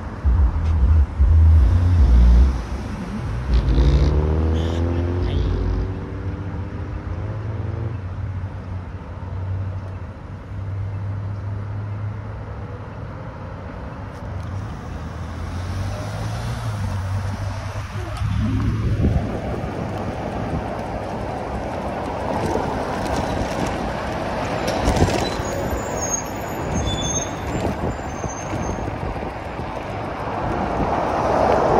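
Road traffic at an intersection, with a vehicle engine humming and rising in pitch over the first several seconds. About eighteen seconds in comes a quick rising whine as the e-bike pulls away, followed by steady wind and tyre noise while riding.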